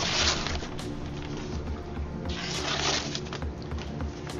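A kukri blade slicing through sheets of paper: two rasping cuts, one at the very start and one about two and a half seconds in. The edge catches on a nick in the blade as it cuts.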